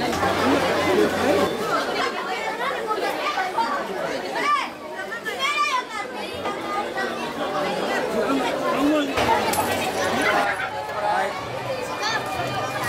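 Chatter of many adults and children talking at once, none of it clearly heard as words, with a few high children's calls around the middle.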